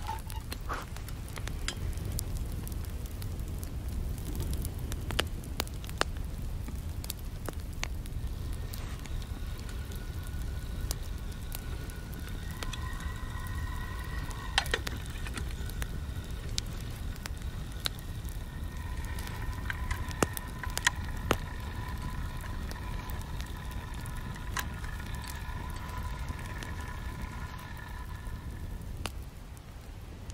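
Wood fire crackling and popping in a folding metal camp stove over a steady low rumble. In the second half a faint steady whistle-like tone comes and goes while a pot heats over the flames.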